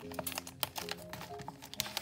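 Clear plastic sleeves and binder pockets being handled, a run of small clicks and rustles as a sleeved sticker sheet is pushed into a pocket. Soft background music plays underneath.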